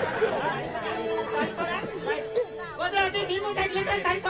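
Several voices talking over one another, with a steady held note underneath from about a second in.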